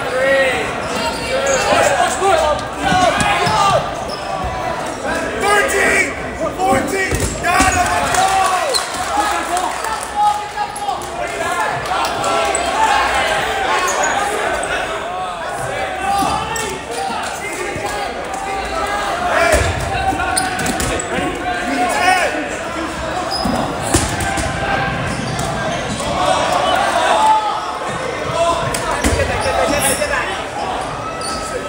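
Dodgeballs thudding at intervals as they bounce off the hardwood gym floor and players, over continuous shouting and calling out from the players, all echoing in a large gymnasium.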